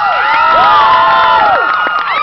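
Audience cheering, with many high-pitched whoops and screams that rise, hold and fall, overlapping one another.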